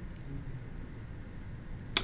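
Quiet room tone with a faint low rumble. Right at the end there is a single sharp click just as a man's voice begins.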